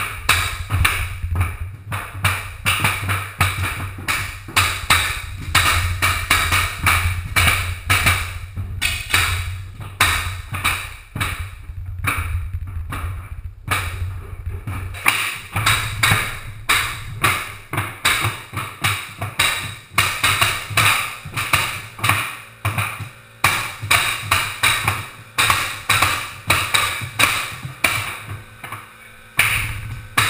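Pneumatic hardwood flooring nailers struck over and over with long-handled mallets, two at once, each blow driving a cleat into the boards: a busy run of sharp strikes, a few a second. A low steady hum runs under the first half and stops about halfway.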